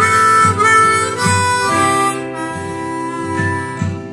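G diatonic harmonica playing a slow melody of held notes, coming in right at the start over a strummed acoustic guitar backing track.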